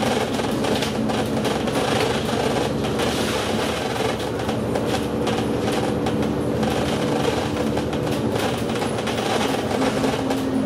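Inside a moving double-decker bus: steady engine drone and road noise, with the body and fittings rattling throughout.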